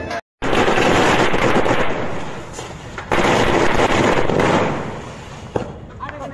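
A string of firecrackers going off in a dense, rapid crackle, in two long bursts with a short lull between, fading out near the end. The sound drops out for a moment just before the first burst.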